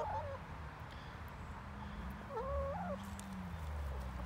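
Domestic hens giving soft, wavering calls: one right at the start and another a little past halfway, over a steady low background hum.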